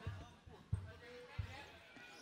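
Three dull low thumps, about two-thirds of a second apart, over faint indistinct voices.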